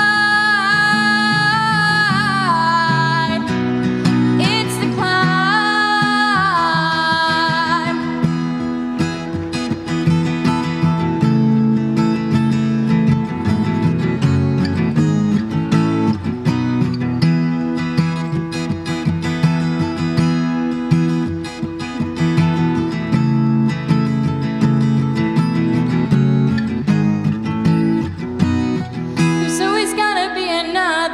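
Acoustic guitar strummed steadily, with a female voice singing long held notes over it for the first several seconds. The guitar then plays alone as an instrumental break, and the singing comes back in just before the end.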